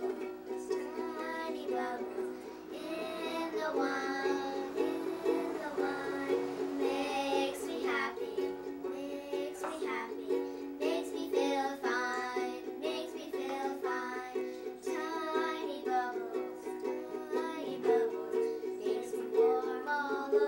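A ukulele strummed in a steady rhythm, with girls singing along.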